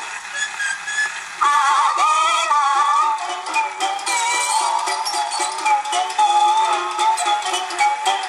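Children's 78 rpm record playing on a clockwork Lumar toy gramophone: a passage of the song's music with no sung words, getting louder about a second and a half in.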